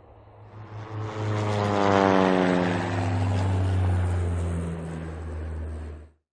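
An engine passing by: a swell of noise with a whining engine note that falls steadily in pitch as it goes, over a steady low hum. It is cut off abruptly near the end.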